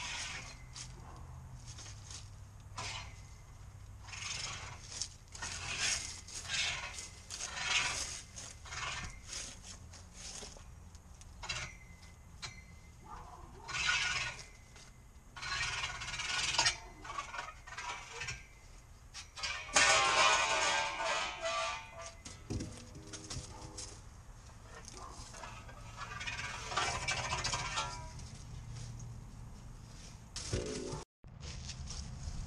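Steel chain-link fence top rail being worked loose and slid out along the posts: repeated bursts of metal scraping and rattling. A louder, ringing scrape comes about two-thirds of the way through.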